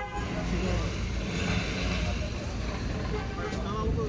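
Steady background noise of running vehicles, with faint voices of other people mixed in.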